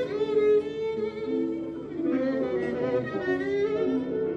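A violin plays a melody of held notes with wide vibrato, sliding into some of them, over an accompanying cimbalom.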